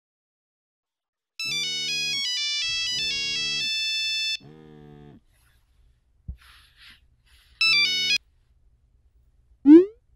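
Smartphone message alert: a melodic ringtone of chiming notes over three pulses of vibration buzz, then a second short chime with a buzz about eight seconds in, signalling an incoming text. Just before the end comes a short rising whoosh, the loudest sound.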